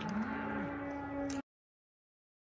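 Cattle mooing: two overlapping moos, one rising in pitch and then held, the other falling away. The sound cuts off suddenly about a second and a half in.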